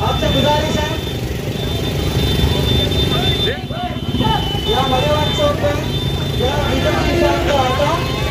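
Many motorcycle engines running together, with a crowd of voices shouting and cheering over them.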